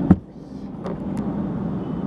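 A sharp knock at the very start as a hand handles the dash-mounted camera, then the steady low hum of a car interior, with a couple of faint ticks about a second in.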